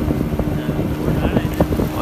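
Small fishing boat's engine running steadily under way, a constant hum, with wind buffeting the microphone.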